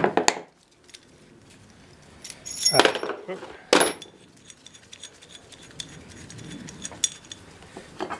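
Steel parts of a brake-line flaring tool clinking and clattering as they are handled and fitted together, with two louder ringing metal clanks about three and four seconds in.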